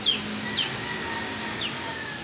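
A bird calling: three short, quick chirps that fall in pitch, over a steady outdoor hiss.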